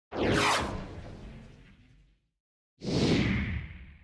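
Two whoosh transition sound effects: the first at the start, sweeping down in pitch and fading over about two seconds, the second about three seconds in, fading out over about a second.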